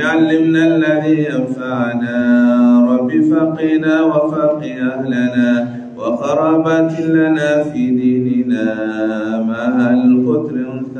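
A man's voice chanting religious recitation close to a headset microphone, holding long melodic notes in drawn-out phrases, with a short break for breath about six seconds in.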